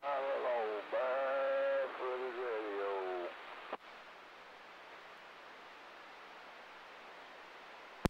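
Another station comes through the CB radio's speaker, thin and band-limited, for about three seconds, answering a request for its "low side" signal. A click follows as the transmission drops, then steady faint static hiss from the receiver.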